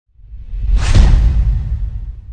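Logo-reveal sound effect: a whoosh that swells over about a second over a deep low boom, then fades slowly.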